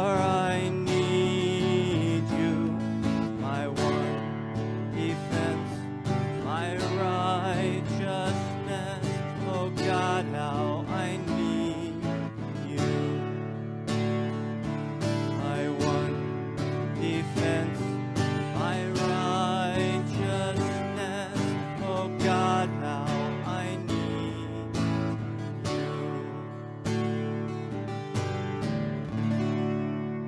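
Acoustic guitar strumming the chords of a slow worship song. The sound fades away near the end.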